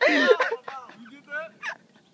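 Men's non-word vocal sounds: a loud yell right at the start, then shorter wavering cries and laughs.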